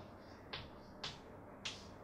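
Chalk striking and scraping on a chalkboard as figures are written: three short, faint strokes about half a second apart.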